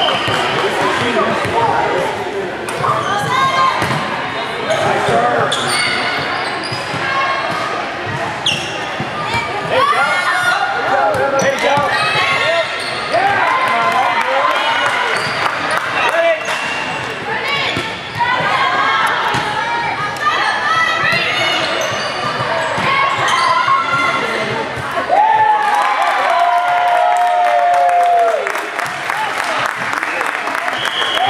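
Volleyball being played in a large gymnasium: repeated sharp hits and bounces of the ball, echoing, with players and spectators calling and shouting throughout. A short, high whistle sounds right at the start, and a long held shout comes near the end.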